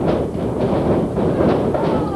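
Thuds of a wrestling ring as a wrestler runs across the canvas and into the ropes, several sharp knocks over crowd voices.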